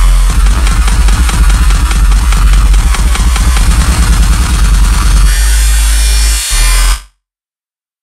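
Drum and bass track with heavy sub-bass and fast drums. About five seconds in the drums drop away, leaving a held bass and a high wash. The track then cuts off suddenly about seven seconds in.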